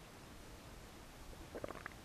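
Quiet room tone with faint low rumble, then a quick cluster of soft taps and clicks about a second and a half in, as something small is handled.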